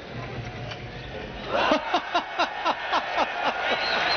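A man laughing hard: a quick run of about ten 'ha' syllables, each falling in pitch, starting about a second and a half in, as a bowler falls over in his delivery. Crowd noise swells up near the end.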